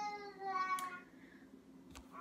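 A single drawn-out vocal sound about a second long, holding a fairly steady pitch, then fading.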